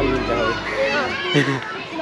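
Several people talking at once, children's voices among them, with a steady low musical tone fading out in the first second.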